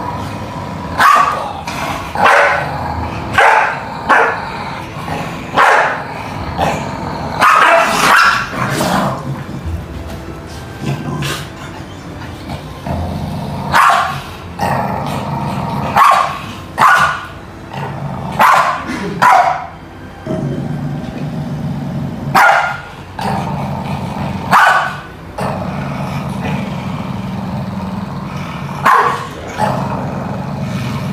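A Pembroke Welsh corgi barking in short, sharp single barks, about seventeen spread unevenly, some in quick pairs with pauses of a few seconds between groups.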